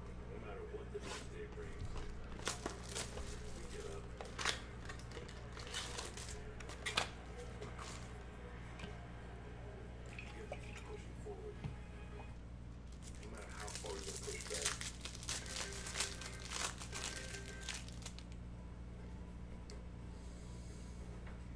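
Clear plastic wrapper on a stack of trading cards being handled, crinkled and torn open. The crackles come scattered at first and thicken into a dense run in the last few seconds, over a steady low hum.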